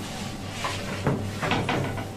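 A few short knocks and scrapes of kitchen work over a steady low hum, bunched in the second half.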